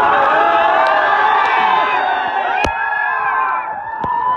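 A crowd of many voices cheering and shouting together at once, with a single sharp knock about two and a half seconds in.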